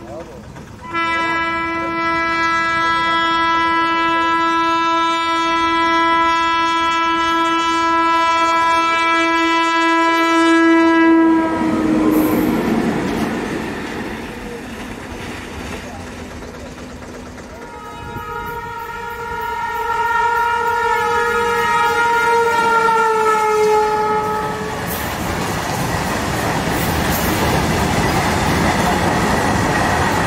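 Freight train locomotive's horn sounding a long, steady, multi-tone blast for about ten seconds as the train approaches. A second blast about 18 seconds in drops in pitch as the locomotive passes close by. It is followed by the steady rumble and clatter of open box wagons rolling past.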